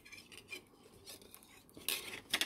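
Thin jewellery wire being wound by hand around a twisted wire frame: faint small metallic ticks and scrapes, with a sharper click near the end.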